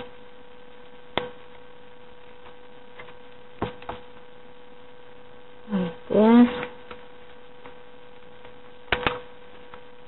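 Scissors snipping through folded paper: single sharp snips about a second in, a pair near four seconds and another pair near nine seconds, over a steady electrical hum. About six seconds in comes the loudest sound, a short wordless vocal murmur with a rising and falling pitch.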